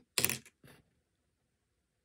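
Skittles dropped into a small plastic bowl: a brief clatter of hard-shelled candy against plastic, followed by a fainter click.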